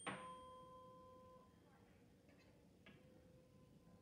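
A higher-pitched tuning fork struck right at the start, ringing one steady pure note that fades and lingers faintly to the end. A faint click or two near the middle.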